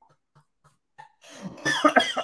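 A few faint breaths of trailing laughter, then near quiet, then about a second and a half in a man coughs hard.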